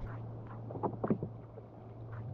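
Water splashing a few times at the surface beside fish caught in a gill net, over a steady low hum.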